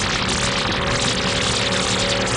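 Opening-title sound: a loud, steady rush of noise with a held chord of several steady tones coming in about half a second in.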